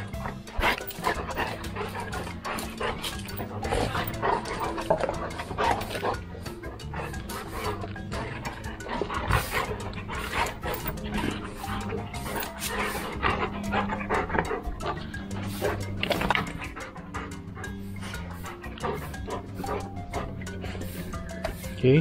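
Two golden retrievers panting and scuffling as they play-wrestle, over background music with low sustained notes.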